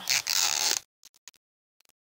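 Plastic tear strip being pulled along the wrapping of a toy capsule, a short hissing rip of about a second, then a few faint clicks of handling. The strip stops short of the end.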